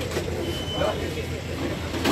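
Indistinct voices of a crowd over the steady low hum of an idling vehicle engine.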